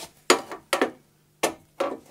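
Ratcheting box-end wrench clicking as it is worked on a bolt, in four short bursts.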